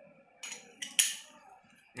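A few short metallic clicks and clinks of hand tools (a wrench and a screwdriver) against engine metal. The sharpest clink comes about a second in and rings briefly.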